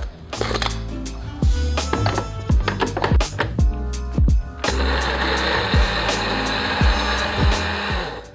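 Electric mini chopper (Blitzhacker) grinding chopped vanilla pod and sugar into vanilla sugar. It starts a little past halfway with a loud, steady grinding whirr and cuts off near the end. Before it come a few plastic clicks as the jar and lid are fitted, and background music plays throughout.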